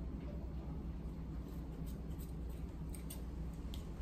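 Scissors snipping a gauze bandage: a few faint, short snips over a low steady hum.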